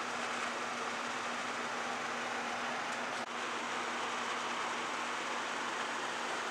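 Steady room noise: an even hiss with a low hum, as from ventilation running. It drops out briefly about three seconds in.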